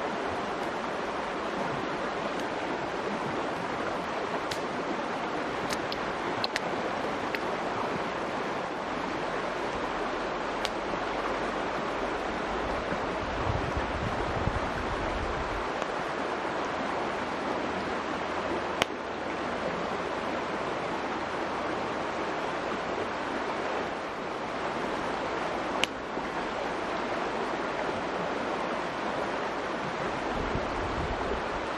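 Fast-flowing mountain stream rushing steadily, with a few sharp snaps from a wood campfire.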